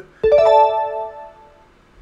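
Short electric-piano jingle: a quick rising run of four or five notes about a quarter second in, ringing on and fading away over about a second. It is the results-reveal sting of the quiz video being watched.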